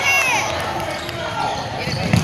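Basketball game on a hardwood gym court: players running, with a short high falling squeak near the start and voices calling in the echoing gym.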